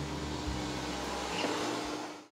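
Steady motor hum of a barber's handheld electric tool at work on the back of a customer's neck, fading out at the very end.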